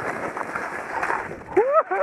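Skis scraping over firm snow through turns, with a brief wordless voice exclamation near the end.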